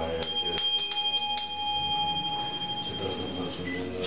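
Bell ringing with a long, bright sustain, struck again a few times in the first second and a half, with a low voice chanting underneath.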